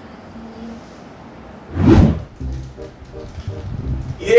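A loud whoosh-like transition sound effect about two seconds in, followed by a short music cue: a few quick repeated notes over a low beat.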